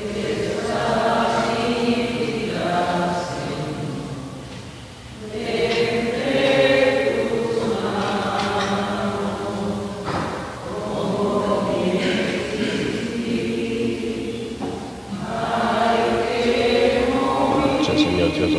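Voices singing a slow offertory hymn in long held phrases, about four phrases with short breaks between them.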